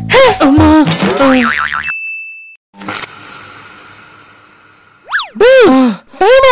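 Cartoon-style comedy sound effects: wobbling pitched sounds at first, a short high beep about two seconds in, then a sudden hit that fades away over about two seconds, and a boing near the end.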